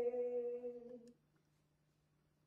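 A woman singing, holding the long final note of a copla with no instruments audible; the note stops about a second in. After it only a faint steady low hum remains.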